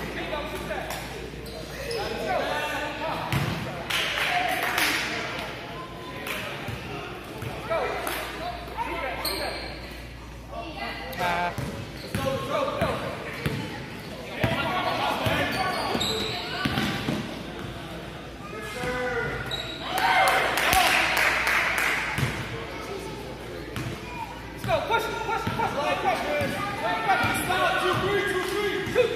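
A basketball being dribbled and bouncing on a gym court during a game, with repeated sharp bounces, amid the voices of players and spectators.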